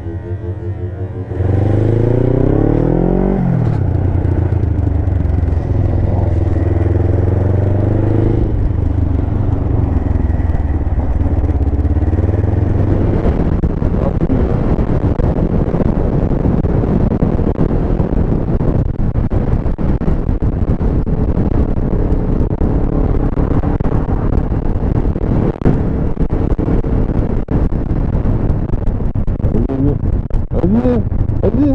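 Motorcycle engine revving up about a second and a half in, dropping at a gear change, then running steadily at speed with wind and road noise on an onboard microphone.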